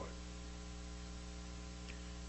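Steady electrical mains hum with a low hiss, unchanging throughout.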